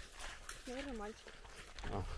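Footsteps swishing through long grass, with wind rumbling on the microphone and a single faint, short wavering call a little under a second in.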